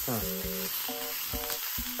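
Hamburger meat sizzling as it fries on a hot griddle, a steady hiss.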